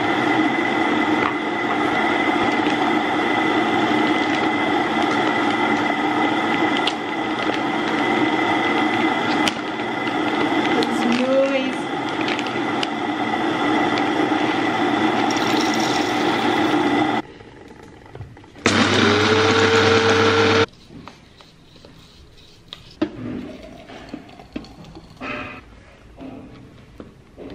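Small electric blade coffee grinder running steadily with a whirring motor hum for about 17 seconds, grinding coffee beans. It stops, then runs again briefly for about two seconds, rising in pitch as it spins up. After that come a few light knocks and clinks.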